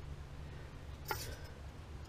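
Quiet room tone with a steady low hum, and a single faint click about a second in.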